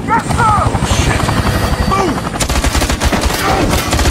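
Film action soundtrack: rapid, sustained automatic gunfire with a helicopter in the mix, and a few short shouted voices.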